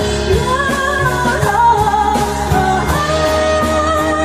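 A Chinese-language pop song: a woman singing a gliding melody over a band with guitar and a steady beat.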